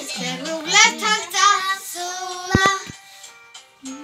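Young girls singing a song together, their voices wavering in pitch. About two and a half seconds in come two quick sharp knocks, and the singing stops about three seconds in, leaving it much quieter.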